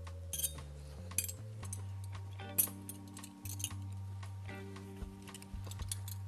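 A knife and fork clinking and scraping several times on a ceramic plate while cutting a raviolo made with thick pasta, over background music with low sustained notes.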